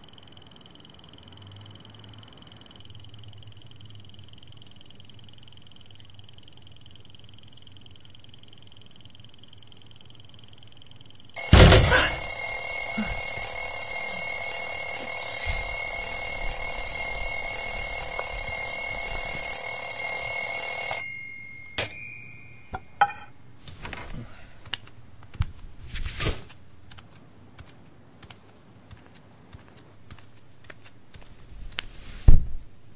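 A loud alarm bell rings without a break for about nine seconds, starting suddenly partway in and cutting off abruptly. A few knocks and clatters follow.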